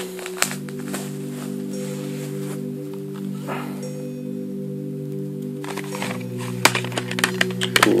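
Background music of steady, held chords that change about half a second in and again about six seconds in. A few light knocks come near the end.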